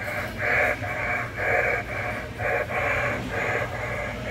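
Animated skeleton horse Halloween prop playing its sound effect through its small built-in speaker after its try-me button is pressed: a thin, tinny series of short raspy bursts, about two a second.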